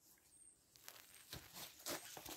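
Near silence, with a few faint short ticks or rustles in the second half.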